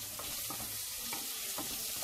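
Sliced onions and carrots sizzling in a steel cooking pot, a steady hiss.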